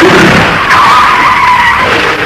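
Double-decker bus tyres skidding on a wet surface: a loud hiss of sliding rubber, with a wavering tyre squeal for about a second in the middle that stops shortly before the end.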